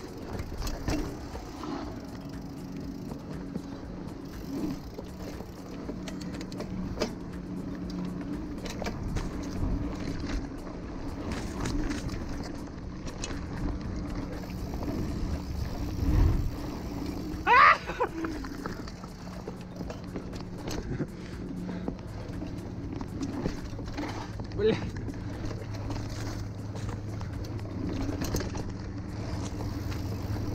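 Mountain bike rolling fast down a dirt forest singletrack: tyre rumble on the soil with frequent clicks and rattles from the bike over bumps, over a steady low hum. A short, loud, rising squeal about two-thirds of the way through.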